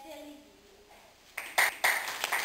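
A young girl's voice finishing a recited piece, then about one and a half seconds in, the audience breaks into clapping with a few loud, close claps.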